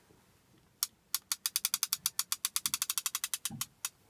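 Fishing reel clicking in a fast, even run of about nine sharp clicks a second, starting about a second in, with a halibut on the line.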